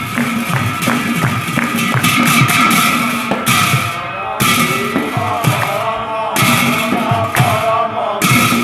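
Large bell-metal hand cymbals (bortal) clashed in a steady rhythm, their ringing swelling and dying away in waves, with drum beats and chanted singing of Assamese devotional nam-prasanga.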